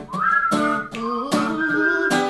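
Acoustic guitar strummed in an even rhythm, with someone whistling a melody over it in a high, clear line that rises near the start.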